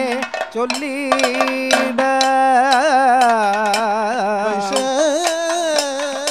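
Kathakali padam singing: a male voice sings an ornamented, wavering melody with a long held passage in the middle, accompanied by strokes on the chenda and maddalam drums.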